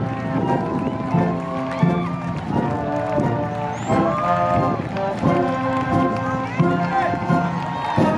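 A high school concert band of woodwinds, brass and percussion playing a piece of band music under a conductor, with held chords and moving notes throughout.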